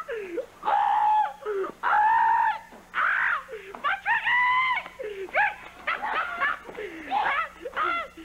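A person screaming over and over: high, drawn-out screams about once a second.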